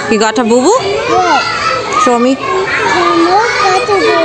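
A small girl talking in a high voice whose pitch swoops up and down.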